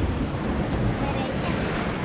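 Ocean surf washing steadily on a rocky shore, with wind rumbling on the microphone.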